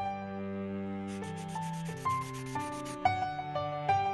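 Background music with long held notes; over it, from about a second in, a fast run of pencil-scribbling strokes, about eight a second, lasts nearly two seconds, followed by a sharp accent about three seconds in.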